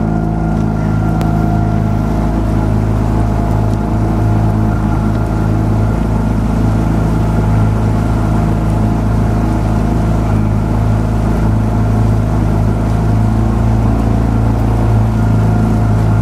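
Outboard motor of a coaching launch running steadily at an even speed close to the microphone.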